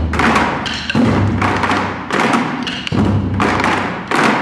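Taiko drums struck by a small ensemble with wooden sticks in a fast, driving rhythm of heavy strokes and regular accents.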